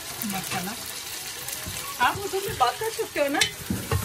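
Onions sizzling in a pot as chopped tomatoes and green chili are tipped in and stirred with a wooden spatula. A few short high voice sounds come in the second half and are the loudest part.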